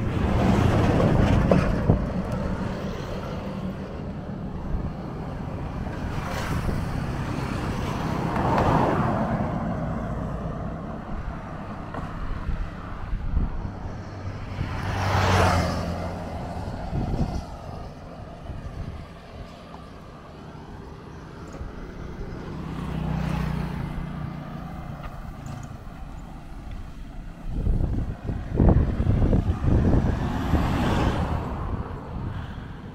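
Road traffic passing close by: motorcycles and a van go past one after another. Each one swells and fades, about five passes in all, the clearest a motorcycle about halfway through.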